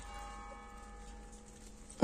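A single bell-like strike right at the start, ringing faintly with several tones together and dying away over about two seconds.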